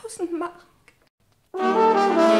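After a short pause, brass instruments come in together about one and a half seconds in and hold a loud chord: a music cue bridging two scenes.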